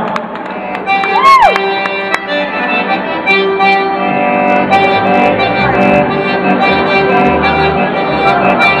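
Accordion playing held chords unaccompanied, tried out for the sound mix. Low bass notes pulse in from about halfway, and a short rising-and-falling glide sounds about a second in.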